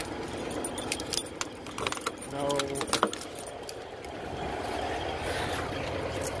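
Scattered metallic clinks and rattles of things being handled, with a brief voice about halfway through.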